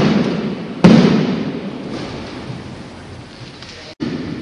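Jumping stilts landing hard on a gym floor: two heavy thuds about a second apart, the first right at the start, each echoing for a second or more in a large hall.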